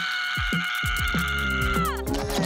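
Dramatic cartoon music with low thuds falling in pitch, about three a second, under a long held high scream from a cartoon baby character. The scream drops in pitch and breaks off near the end.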